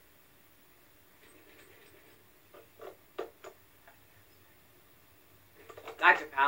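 Faint cartoon sound effects from a film soundtrack played through a TV: a handful of short soft clicks in the middle, otherwise nearly silent.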